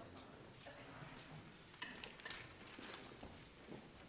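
Faint footsteps and shuffling of a group of people moving into place on a stage, with a few sharp clicks about two seconds in.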